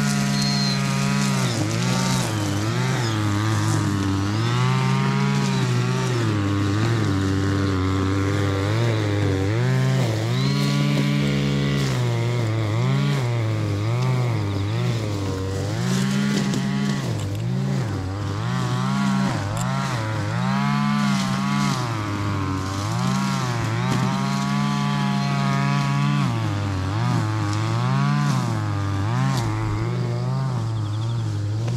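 Petrol brush cutter (grass trimmer) engine running, its pitch rising and falling over and over as it revs while cutting grass.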